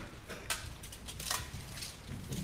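Low room noise through the microphone, with a few brief faint clicks, the clearest about half a second in.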